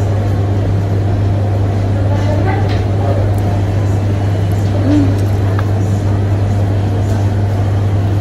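A steady low hum, even in level, under faint background voices, with a brief vocal murmur about five seconds in.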